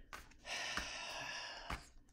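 A woman drawing one long breath in through her mouth, lasting about a second, with a click near the end.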